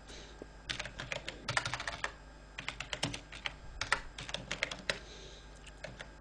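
Typing on a computer keyboard: several short runs of quick keystrokes with brief pauses between them, fairly quiet.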